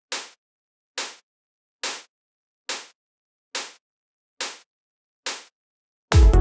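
Synthesized psytrance snare from Serum's noise oscillator, triggered seven times at an even pace a little under a second apart. Each hit is a short, bright burst of noise with no low end, starting instantly with zero attack and decaying in about a quarter second.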